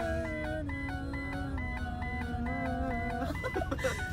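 A van's dashboard warning chime beeps over and over, about three times a second, a fault warning that needs checking. A voice sings long held notes along with it. Shortly before the end it stops and gives way to a few short scattered sounds.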